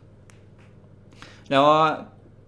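A short pause in a man's talk with low room tone and one or two faint clicks, then he starts speaking again near the end.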